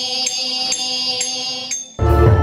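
Thiruvathirakali song: a singer holds one long note over a steady beat of small cymbals, about two strikes a second. The sound drops away just before the end.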